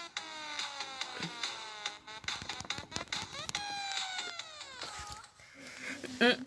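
A high-pitched voice making long, drawn-out tones that slide slowly downward, one after another, with sharp clicks in between.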